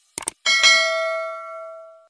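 Subscribe-button notification sound effect: two quick clicks, then a bright bell chime that rings on and fades away over about a second and a half.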